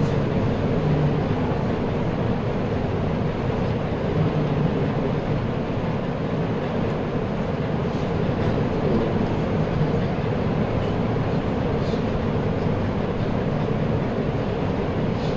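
Steady rushing hum of ceiling fans running, with no recitation over it.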